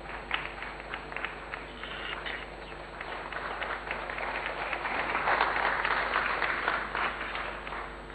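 Audience applause: scattered claps that thicken into fuller applause around the middle, then die away near the end.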